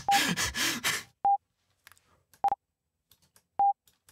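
Three short, high beeps about a second and a quarter apart, each starting with a sharp click. This is Geonkick's synthesized kick being retriggered on each pass of a short playback loop in Ardour, with the loop clicking at the wrap point.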